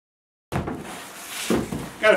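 Silence for the first half-second, then a hand file rasping along the trimmed edge of a plastic barrel sheet fastened to wood, with one sharp knock near the end. The filing smooths the frayed burrs left by the router's laminate trim bit.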